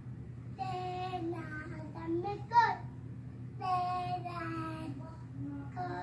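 A young girl singing to herself in short sung phrases with pauses between them. A quick upward slide in pitch about two and a half seconds in is the loudest note.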